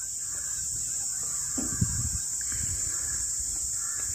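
Ford 3600 tractor engine running at idle as a low, uneven rumble, under a steady high-pitched drone of insects.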